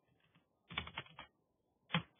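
Faint computer keyboard keystrokes: a quick run of several key presses about two-thirds of a second in, then one sharper single keystroke near the end.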